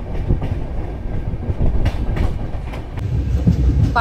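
The Padatik Express passenger train running along the line, heard from inside the coach: a steady low rumble of wheels on rails with a few faint clicks.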